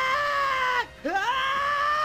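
A high-pitched wailing voice, held as two long notes with a brief break about a second in.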